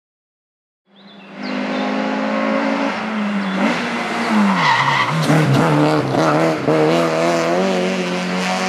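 Honda Civic hatchback engine running hard up a hill-climb course, fading in after about a second. Its pitch drops sharply around four to five seconds in as the car lifts off and slows for a bend, with a brief high squeal, then climbs again as it accelerates past.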